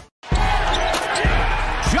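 After a short moment of silence, a basketball bouncing on a court, three thumps, over arena crowd noise; a man's voice begins right at the end.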